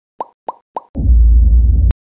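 Three quick pop sound effects about a third of a second apart, then a loud, deep low sound lasting about a second that cuts off abruptly with a sharp click.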